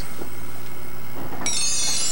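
Game-show board sound effect: a steady rushing noise, then about a second and a half in a sudden bright electronic chime of several high held tones as the square flips to reveal a cash amount.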